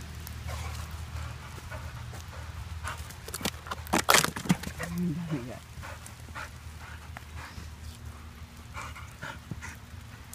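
A puppy making small sounds, with a short low whine about five seconds in, amid knocks and scuffles that are loudest about four seconds in. A steady low hum lies underneath.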